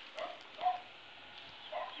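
A dog barking faintly, three short barks about half a second to a second apart.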